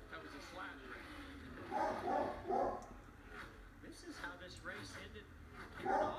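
Television sports broadcast heard through the TV speaker across a room: a commentator talking, loudest about two seconds in, over a low steady rumble from the race coverage.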